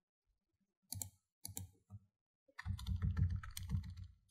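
Computer keyboard keys clicking: a few separate keystrokes, then a quick run of presses starting about two and a half seconds in, as text is deleted with the backspace key.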